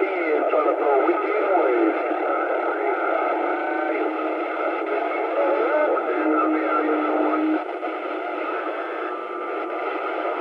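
CB radio receiver on channel 28 playing long-distance skip: a continuous narrow-band wash of noise with faint, garbled voices and wavering tones mixed in. A steady tone sounds about six seconds in, and the level drops a little after it.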